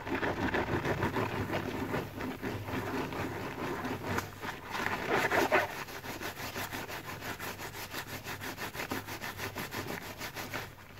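Soap-laden plant-fibre sponge squeezed and worked by rubber-gloved hands in thick foam: wet squelching with a dense crackle of popping suds. It is loudest about halfway, then settles into quicker, even squeezes.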